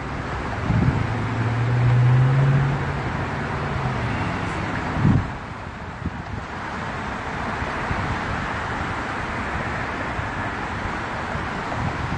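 Highway traffic going by in a steady rush of tyres and engines. One vehicle's low engine hum swells and fades about one to four seconds in, with a couple of brief bumps on the microphone.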